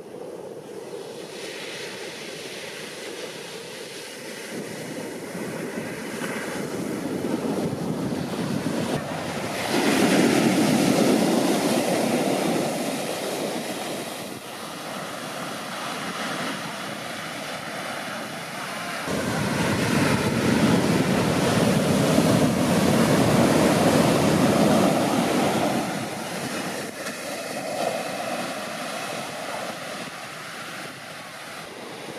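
Heavy shorebreak surf breaking and washing up the beach, a continuous rushing noise that swells loud twice: about ten seconds in and again about twenty seconds in, as big waves crash.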